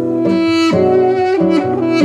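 A duduk plays a melody of long held notes over a classical guitar's plucked accompaniment.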